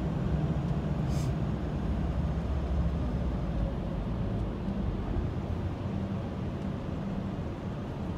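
Motorhome engine running at low speed, heard from inside the cab as it moves slowly along the ferry's vehicle deck: a steady low rumble.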